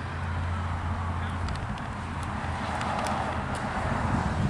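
Steady outdoor background rumble with a low hum that fades about a second and a half in, and a few faint clicks.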